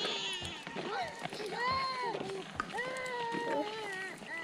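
Young children's high-pitched voices calling and chattering, with several long drawn-out calls.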